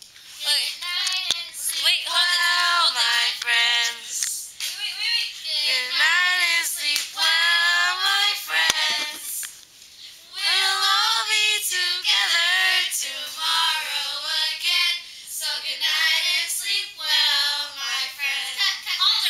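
A small group of girls singing a camp song together without accompaniment, in sung phrases with short breaks about four and nine seconds in.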